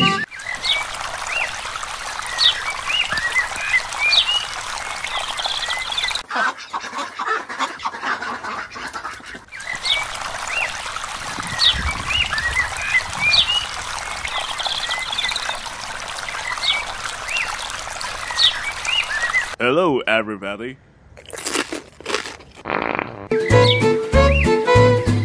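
Outdoor nature ambience: a steady hiss with short, high chirping animal calls scattered through it, and a few lower wavering calls near the end.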